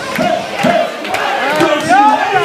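A crowd shouting and chanting together over music, many voices overlapping at once.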